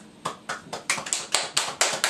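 Scattered hand claps from a few people, starting about a quarter second in and quickening to about five a second.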